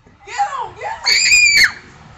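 A voice rising into a loud, high-pitched scream about a second in, held for over half a second and then dropping away. It is the excited shrieking of people chasing each other in a game.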